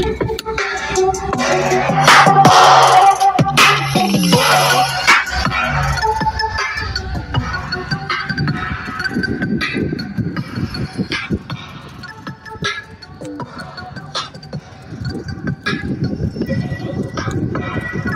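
Instrumental song with a beat and bass line played through a pair of Resilient Sounds 6.5-inch car door speakers, heard from outside the vehicle across open ground. It is loudest in the first few seconds and fainter in the middle.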